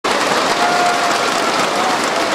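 Audience applauding steadily, with a faint held tone sounding through part of it.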